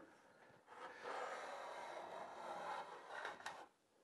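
Homemade wooden chamfer plane, its iron cut from an old jointer blade, pushed along the sharp edge of a board in one long steady stroke of about three seconds, the blade shaving off a thin curled strip of wood.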